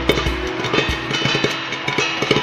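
Jowar (sorghum) grains popping in a hot steel kadhai: irregular sharp pops, several a second, over steady background music.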